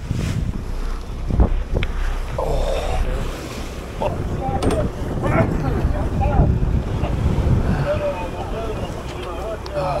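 Wind buffeting the microphone on a fishing boat running through rough, choppy sea, with the rush of water along the hull.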